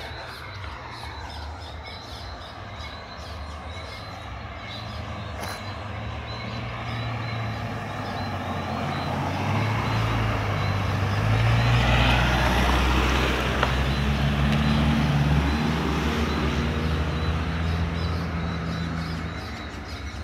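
Cars approaching and driving past close by: engine and tyre sound builds to its loudest about twelve seconds in, holds, then falls away near the end. Regular high chirping is heard in the first part.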